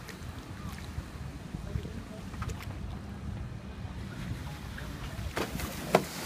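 Wind buffeting a phone microphone beside open water, a steady low rumble, with a few light handling clicks and one sharp knock just before the end.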